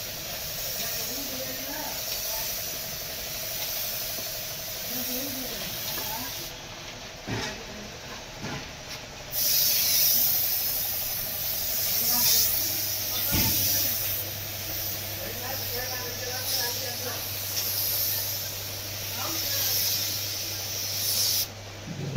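Compressed-air paint spray gun hissing as it lays the final clear lacquer coat on a car body. The hiss stops for about three seconds a third of the way in, as the trigger is let off, and again just before the end. A steady low hum comes in about halfway through.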